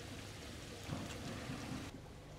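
Pond water splashing steadily around a koi held in a floating net, fairly quiet, cutting off abruptly just before the end.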